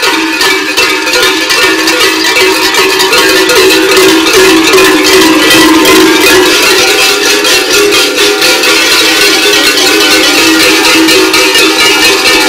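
Large cowbells hung from the waists of several Kurent costumes clanging continuously as the wearers move, a loud, dense, unbroken jangle of many bells ringing at once.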